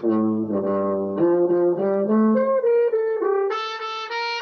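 Brass instruments, a sousaphone, tuba, French horn and trumpet, playing one note after another through a TV speaker. A long low note comes first, then shorter notes step upward in pitch, and a brighter, higher note enters about three and a half seconds in.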